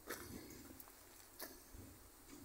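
Near silence, with two faint clicks: one at the start and one about a second and a half in.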